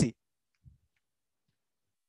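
Near silence after a man's speech cuts off at the very start, broken by one faint click about two-thirds of a second in.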